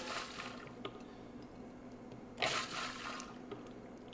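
Herb-and-vinegar dressing splashing in a plastic food-processor bowl as it is given a short pulse, with one brief burst of sloshing about two and a half seconds in.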